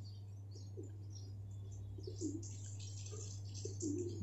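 Faint scratching of a ballpoint pen writing on paper over a steady low hum, with a few soft bird calls in the background.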